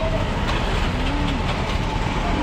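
Steady low rumbling street noise under faint voices of people nearby, with a few light ticks.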